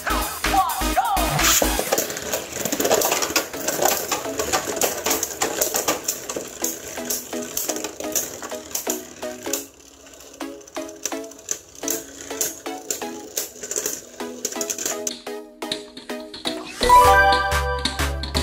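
Two Beyblade Burst spinning tops, one a Cho-Z Valkyrie, spinning and clashing against each other in a plastic stadium, with rapid clicks and rattles that thin out after about ten seconds as they slow. Background music plays throughout, and a heavy bass line comes in near the end.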